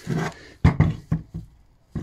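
A turbocharger with its exhaust downpipe attached is being handled and set down on a workbench, giving three sharp knocks within about half a second.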